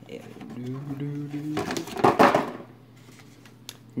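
A cardboard toy box handled close to the microphone, with a loud, brief rustle of card rubbing and sliding just after the middle and a small click near the end.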